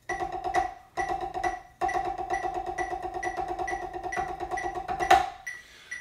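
Drumsticks playing fast, even sixteenth notes on a practice pad, over a metronome clicking quarter notes at 134. The strokes stop short twice early on, then run on steadily and end with one louder stroke about five seconds in.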